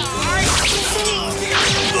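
Weapons whooshing through the air in a staged sword-and-staff fight, two swishes shortly after the start and near the end, over dramatic background music.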